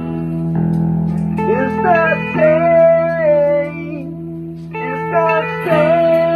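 Guitar music: a steady low chord with a melody line of long, sliding held notes that comes in about a second and a half in, breaks off briefly after about four seconds, and returns near the end.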